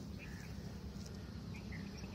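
Outdoor ambience in a pause: a steady low rumble with a few faint, short bird chirps, one just after the start and a couple more in the second half.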